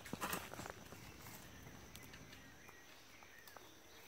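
A few soft knocks of a hoe blade striking soil in the first second, then faint scraping and rustling from weeding by hand and hoe.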